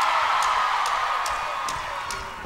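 Concert crowd cheering, slowly fading, with faint even ticks about twice a second, a count-in just before the band starts the song.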